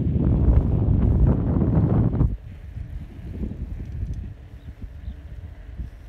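Wind buffeting a handheld phone microphone on a moving bicycle, a loud low rush for about two seconds that then drops suddenly to a faint, quieter rush.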